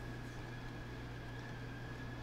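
Room air conditioner running steadily: a constant low hum and a faint high whine over a soft hiss.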